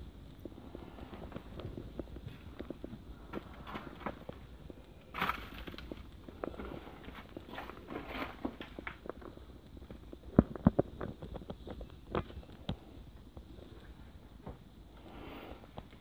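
Footsteps crunching over broken plaster and debris on a wooden floor: irregular crackles and knocks, with a run of sharper cracks about ten to twelve seconds in.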